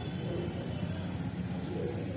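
Faint bird call over steady background noise.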